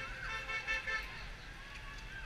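A car horn tooting in several short beeps during the first second, over a steady low rumble of road traffic and people talking.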